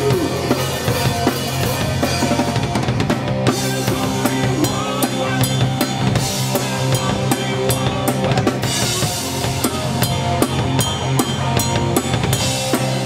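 Live rock band playing, led by a Sonor drum kit with bass drum, snare and cymbals driving a steady beat, over held electric guitar and bass notes.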